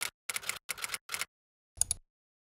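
Typing-style sound effect: quick runs of sharp key clicks as the on-screen text types out, with short silent gaps. Near the end comes a single louder click with a low thump.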